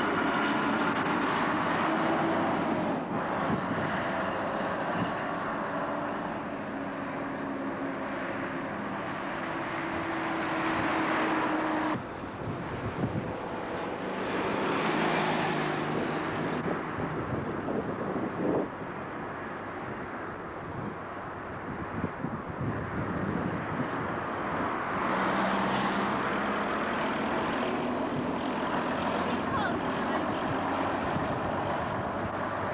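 Diesel double-decker buses running and passing by along a street, with engine drone and the rush of other traffic swelling and fading as vehicles go past. The sound changes abruptly about twelve seconds in where one clip cuts to the next.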